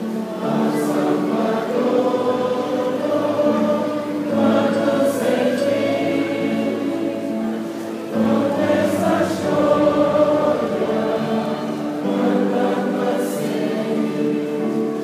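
A church choir singing a hymn together, in long phrases with held notes.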